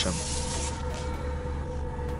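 Steady low hum inside a Maserati's cabin, with a faint steady tone above it and a light hiss.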